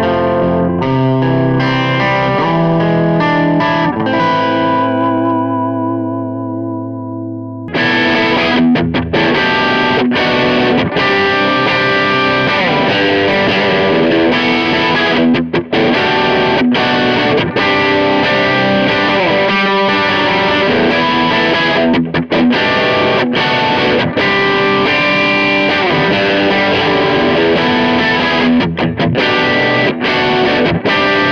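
Electric guitar through a Mesa/Boogie Mini Rectifier 25 tube amp head. On the driven clean channel, a chord rings out with a wavering shimmer and fades. About eight seconds in it cuts to a Fender Telecaster playing crunchy overdriven classic-rock riffs on the amp's vintage channel.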